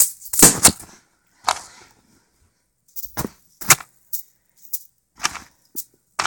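Juggling balls knocking and clattering in the hands: a run of about nine sharp, irregularly spaced knocks, the loudest in the first second, as the balls are caught and gathered after a run.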